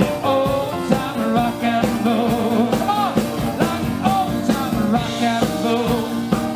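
Live rock and roll band playing loudly: a saxophone carries a bending, sliding lead line over keyboard and drums keeping a steady beat.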